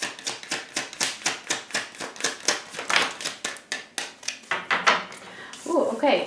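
A deck of tarot cards being shuffled by hand: a rapid run of crisp card clicks and slaps, several a second, that stops about five seconds in.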